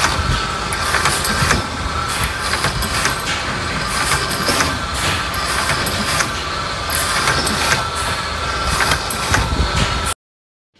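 Small vertical drilling machine running steadily, with irregular sharp clicks and knocks as short copper tube pieces are loaded into its fixture and machined.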